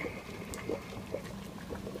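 Pasta water boiling in a pot, faint, with a few soft clicks from a wooden spoon stirring sauce in a pan.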